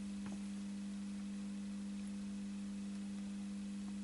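A steady low electrical hum with a few faint overtones, unchanging in pitch and level, and one faint tick shortly after the start.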